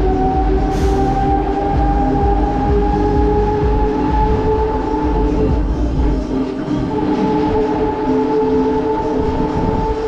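Huss Break Dance ride running: the drive machinery gives a steady whine that slowly rises in pitch over a low rumble as the platform and cars spin. A brief hiss comes about a second in.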